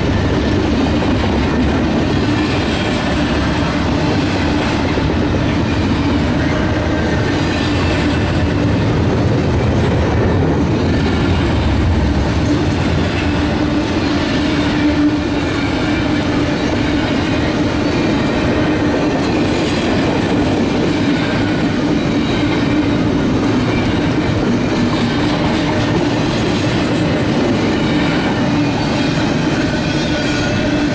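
Double-stack container well cars of a freight train rolling past at close range: steady wheel-on-rail noise from the passing cars. The deepest part of the sound eases about twelve seconds in.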